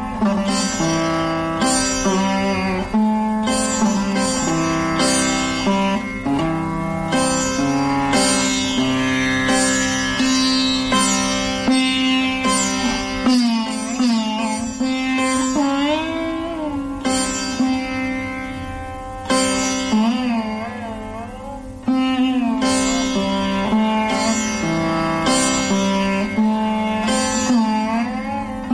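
Sitar playing Raga Bibhas: plucked notes ringing on, with long bends in pitch drawn along the string around the middle and again about twenty seconds in.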